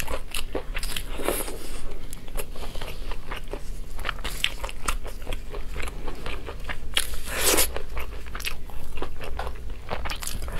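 Close-miked eating of braised ribs: wet biting and chewing with many sharp crackly clicks as meat is torn from the bones. A louder, longer burst of noise comes about seven seconds in.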